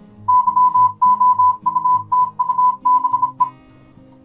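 Morse code tone of about 1 kHz from an online text-to-Morse converter's audio file, keyed in rapid dots and dashes at about 36 words per minute, spelling "youtube". It stops about three and a half seconds in.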